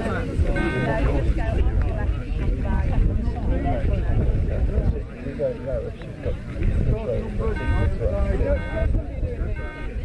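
Indistinct chatter of several people talking nearby, over a steady low rumble.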